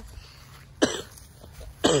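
A person coughing: two short, sharp coughs about a second apart.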